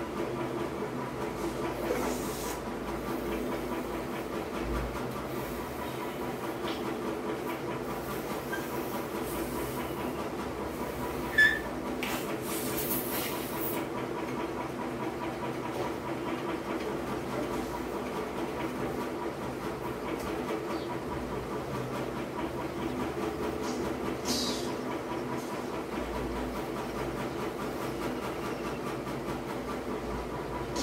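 A steady droning background noise throughout, with a few short breathy puffs as a balloon is blown up by mouth, and one sharp click about eleven seconds in.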